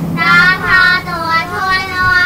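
Children chanting Khmer consonant names aloud in a high, sing-song drawl, holding each syllable.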